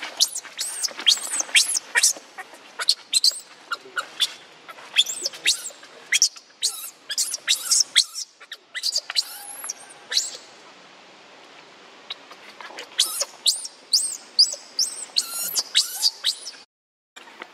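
Baby macaque crying: a rapid run of shrill, high-pitched squealing calls, several a second, breaking off for about a second and a half after the middle before starting again.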